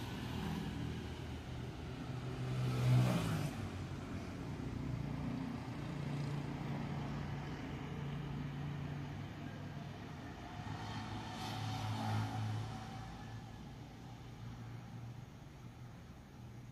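A motor vehicle engine hum that swells twice: first to its loudest point about three seconds in, with the pitch falling, and again near twelve seconds. It fades toward the end.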